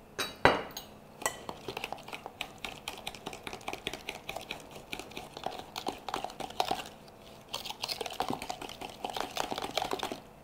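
A metal utensil beating eggs, sugar and vanilla in a plastic measuring jug: quick, irregular clicks and taps against the jug's sides, with a sharper knock about half a second in.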